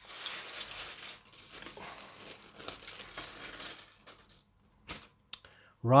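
Small plastic LEGO pieces clattering onto a desk and being spread out by hand after being emptied from a bag. The clatter lasts about four seconds, followed by a few separate clicks near the end.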